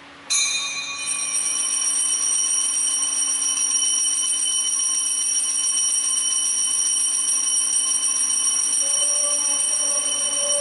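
A bell ringing continuously at a steady level, starting suddenly a moment in, with several high ringing tones held throughout.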